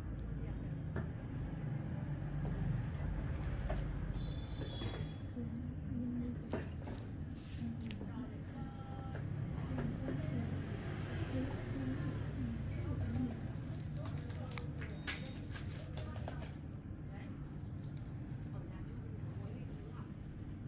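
Faint, indistinct voices over a steady low hum, with a few light clicks scattered through.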